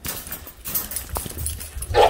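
Commotion of an excited Vizsla puppy coming out of its wire crate: scattered rattles, knocks and scuffling, with handling rumble on the microphone. A sharp knock comes about halfway through, and a louder burst right at the end.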